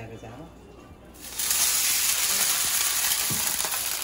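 Food sizzling in hot oil in a pan: a loud, steady hiss that starts suddenly about a second in.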